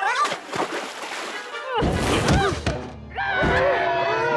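Cartoon soundtrack: wordless, gliding character vocal cries over background music, with a loud burst of noise about two seconds in.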